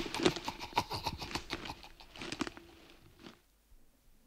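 Hurried footsteps: a quick, dense run of light steps that fades away over about three seconds.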